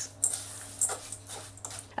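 Silicone spatula stirring seeds soaked in water in a stainless-steel bowl: a few short, irregular wet scrapes and rustles against the metal.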